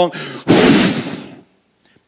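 A man blows one forceful breath straight into a handheld microphone, a loud whoosh of air starting about half a second in and fading out after about a second, acting out the breath of God.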